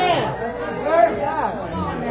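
Speech: a preacher's voice carried through a microphone and loudspeakers in a hall, with chatter from the congregation.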